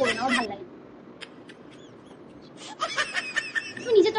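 A woman's voice: a few words at the start, a pause of about two seconds, then a run of short, breathy vocal sounds near the end.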